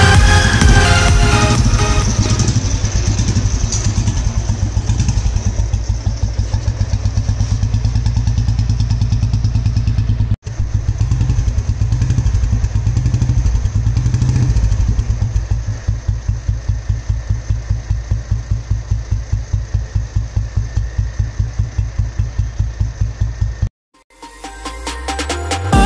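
Single-cylinder engine of a restored 1967 Royal Enfield Bullet running with a steady, even beat of exhaust pulses from its silencer. About two-thirds of the way in it settles into a slower, more distinct beat.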